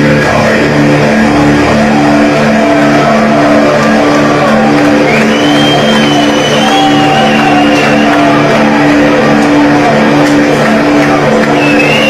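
Heavily distorted electric guitars of a live death metal band ringing out in a low, repeating pattern, with a high guitar feedback squeal that slides up about five seconds in and wavers for a few seconds; a second squeal comes in near the end.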